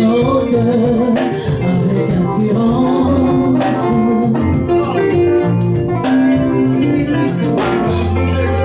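A woman singing into a microphone over a live band with guitar and drums, the music running steadily.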